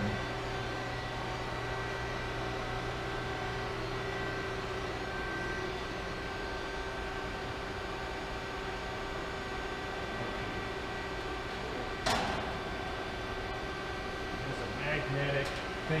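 Steady hum with a few held tones from a Hoston CNC press brake's 14.75 hp hydraulic pump running at idle. A single sharp knock comes about twelve seconds in.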